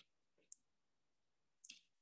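Near silence: room tone, with a single faint, short click about a quarter of the way in.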